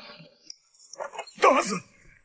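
A man's short wordless cries, two voiced bursts with wavering pitch, and a faint click about half a second in.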